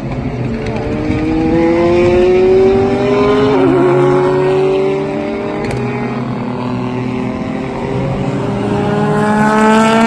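Super GT race car engines accelerating past on a wet track, the pitch rising steadily over the first few seconds with a brief warble about three and a half seconds in. A second car's engine rises in pitch near the end.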